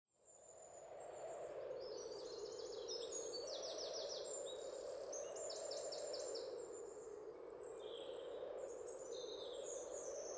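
Forest ambience fading in: birds calling in quick series of high chirps over a steady low rushing background.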